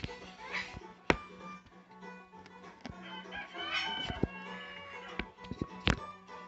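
A few sharp clicks and knocks from a phone being handled, over a steady low hum, with a brief clucking, bird-like sound about four seconds in.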